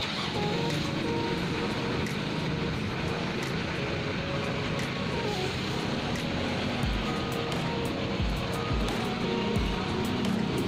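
Steady street traffic noise with faint background music, and a few low thumps of wind on the microphone in the last few seconds.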